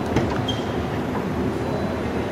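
Jeep Wrangler JK door latch clicking as the red handle is pulled at the start, then the door swinging open over a steady low background noise.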